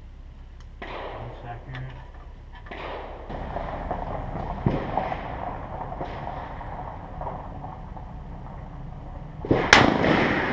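A single shot from an M1 Garand .30-06 rifle near the end, loud and sudden with a ringing echo after it. Before it come a few faint clicks and knocks of the rifle being handled.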